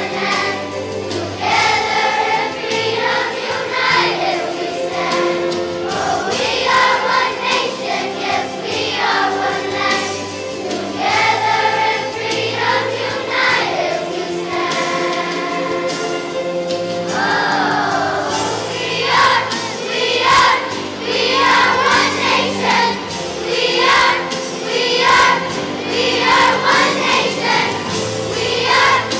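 Large elementary-school children's choir singing a song together over instrumental accompaniment.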